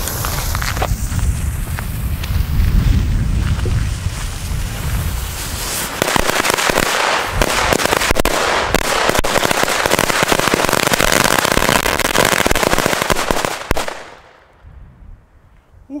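A 5000-shot string of flash-powder firecrackers (Iskra Blitz Rums 5000) going off as a long, rapid chain of sharp bangs, growing denser partway through and stopping abruptly with about two seconds left.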